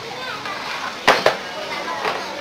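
A plastic chair knocking twice in quick succession on a tiled floor as a young orangutan handles it, over background voices and children's chatter.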